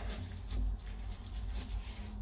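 Screwdriver turning a screw in a metal shower drain grate, a quiet scraping and rubbing.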